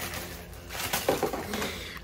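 Stiff plastic clip strips rustling and clicking as they are handled and straightened, with a few louder crinkles about a second in.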